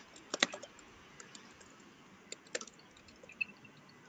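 A few faint clicks of a computer's keys and mouse being operated, in two small clusters: one just after the start and one about two and a half seconds in, over low room tone.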